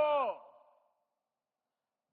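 The end of a man's spoken word through a microphone, its pitch falling, trailing off in echo within the first second, then silence.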